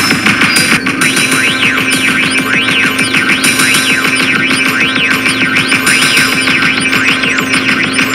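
Electronic synthpop instrumental made on iPad synth apps: a drum-machine pattern of kick, tom, ride and zap sounds under dense synthesizer tones. Sweeping tones cross up and down, and a steady held note comes in about a second in.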